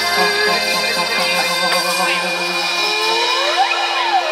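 Live ramwong band music with held electronic keyboard notes and no drums. The bass drops out about halfway through, and a rising pitch sweep climbs near the end.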